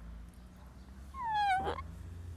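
A boy crying: one short, high whimper that falls in pitch, about a second in, ending in a breathy sob.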